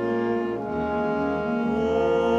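Theatre pit orchestra from a 1950s Broadway cast recording playing sustained chords, with French horns and strings. The harmony and bass shift about half a second in.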